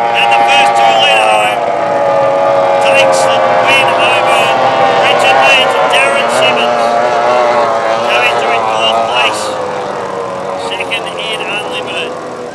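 Racing outboard engine on a race boat running flat out as it passes, its pitch sliding down and the sound slowly fading as it moves away.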